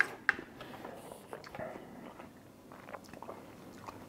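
A person bites into a slice of Tashkent torpedo melon and chews its juicy, slightly coarse, cucumber-like flesh. Two sharp bites come at the very start and about a third of a second in, followed by softer, irregular wet chewing and small crunches.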